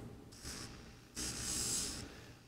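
Abrasive rotary sprue-removal bur on a slow-speed dental handpiece rubbing over a lithium disilicate crown: a faint, high, scratchy hiss in two strokes, a short one and then a longer one starting about a second in.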